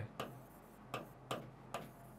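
A pen tip clicking against a writing screen while writing by hand: four faint, sharp taps at uneven intervals.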